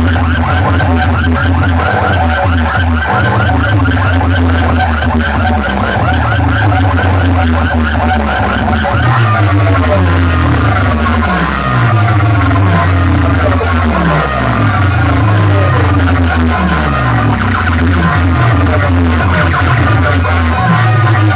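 Loud electronic dance music played through large outdoor DJ speaker stacks, with heavy bass throughout. From about halfway, repeating downward pitch sweeps come about once a second.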